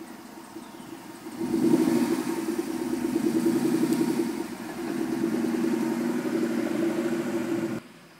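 2012 Ford Mustang GT's 5.0-litre V8 through Ford Racing GT500 mufflers: a low rumble, then the engine is given throttle about a second and a half in and runs loud as the car pulls away, with a brief dip halfway. The sound cuts off suddenly near the end.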